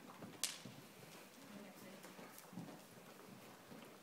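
Faint hoofbeats of a ridden horse moving at a jog, with a sharp click about half a second in.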